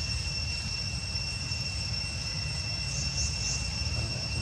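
Steady high-pitched drone of insects in forest, with a low rumble underneath and a few faint short high chirps about three seconds in.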